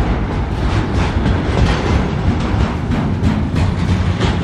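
Loaded container flat wagons of a broad-gauge freight train rolling past close by: a steady, loud rumble with a quick, uneven clatter of wheels over the rail joints.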